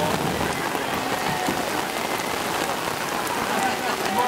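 Steady rain pouring down on a wet street, with a constant even hiss of drops.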